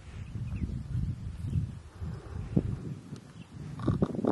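Cattle lowing, a low rumbling call, louder near the end.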